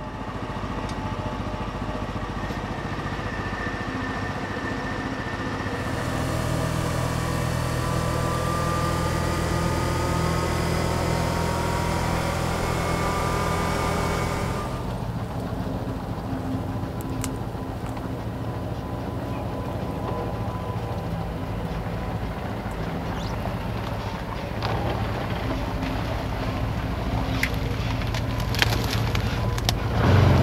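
ATV engine running with a steady low drone. For several seconds in the middle it grows louder, with a faint rising whine over it, then settles back to a steadier run. A few sharp snaps come near the end.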